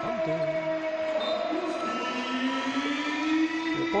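Arena sound just after a handball goal: crowd noise with several long, held horn-like tones over it, one of them slowly rising in pitch.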